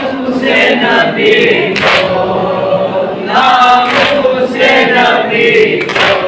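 A group of men singing a noha, a Shia mourning lament, together in long held lines, with sharp chest-beating (matam) strikes about every two seconds.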